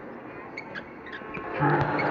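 Basketball gym ambience with a few short squeaks and bounces from the court. Near the end, a loud, low, drawn-out sound starts abruptly and carries on.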